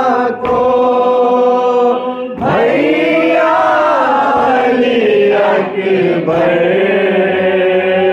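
Male chanting of a noha, a Shia lament, sung in long held notes whose pitch slowly bends and wavers. There is a short break about two and a half seconds in before the next phrase begins.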